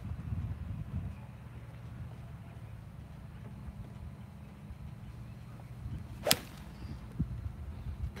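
A golf club striking a ball off the turf in a full swing: one sharp, crisp crack about six seconds in, with a faint steady low background around it.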